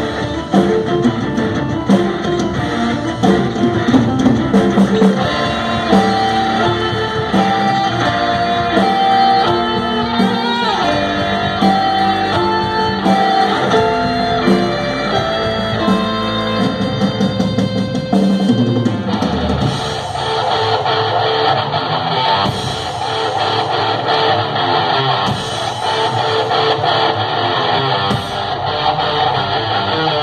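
A live instrumental metal band plays electric guitars, bass guitar, drum kit and keyboard. A melodic passage of picked single-note lines over drums gives way, about two-thirds of the way through, to a denser, heavier full-band section.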